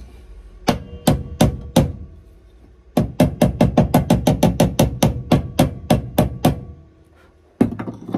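Small hammer striking the steel inner sill panel of a Ford Escort RS Turbo body shell: four separate blows, then a rapid, even run of about twenty quick taps, and one more blow near the end.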